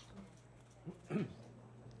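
A person's short cough, like a throat-clearing, about a second in, over a faint steady hum.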